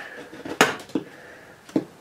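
A few sharp clicks and knocks, the loudest about half a second in, from hands working at the metal fittings and pressure relief valve of an old RV water heater.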